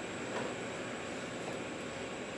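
Room tone in a presentation room: a steady hiss of background noise with a faint, thin high-pitched whine.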